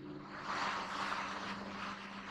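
Felt-tip marker scratching across a whiteboard while a word is written out, a soft steady rasp that swells about half a second in, over a constant low hum.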